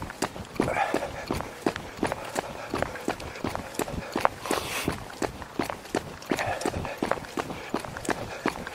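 Footfalls of a person running, a steady rhythm of about three strides a second.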